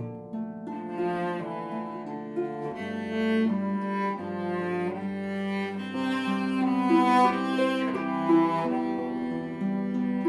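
Cello and harp playing a slow duet: long, held bowed cello notes over plucked harp accompaniment.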